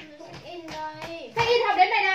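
A young child's high voice singing a few drawn-out, gliding notes, louder in the second half, with a few short clicks in the first half.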